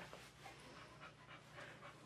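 Faint panting of a boxer dog, soft irregular breaths.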